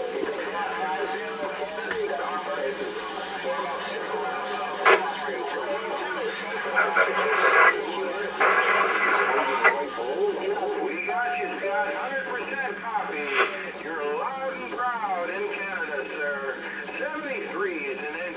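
Ten-meter amateur radio chatter heard over a transceiver's speaker: distant voices coming through thin and warbling, cut off in the highs, over a steady low hum. A sharp crack comes about five seconds in, and short bursts of static follow between about seven and ten seconds in.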